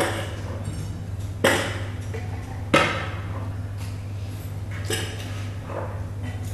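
Sharp knocks and clinks of kitchenware being handled on a hard surface, four of them a second or more apart, as the baked fish's dish is picked up and moved. A steady low hum runs underneath.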